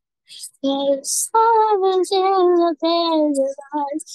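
A single voice singing without accompaniment. Held notes are broken by short gaps and hissy consonants, and the singing starts about half a second in.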